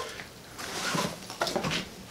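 Soft rustling and handling of a small nylon drawstring bag, with a few faint light knocks about a second in.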